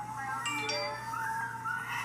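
A baby's drawn-out, wavering cry, one long unbroken wail, with a few brief clinks about half a second in.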